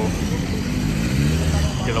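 Road traffic: a motor vehicle's engine rumbles low as it passes on the street, swelling and fading over about a second, over a steady traffic rumble.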